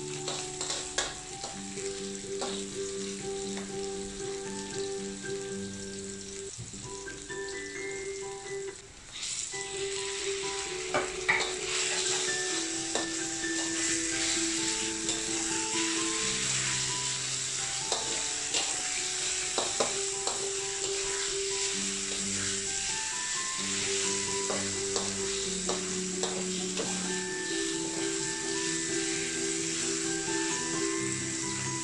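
Oil sizzling in a steel wok as sliced shallots, ginger and chicken stir-fry, with a metal spatula scraping and clicking against the pan. The sizzle gets clearly louder about nine seconds in. Background music plays throughout.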